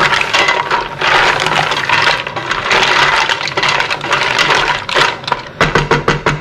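Mussels being stirred in a steaming pan: shells clattering against each other and the metal pan over a continuous hiss, with a few sharper clacks near the end.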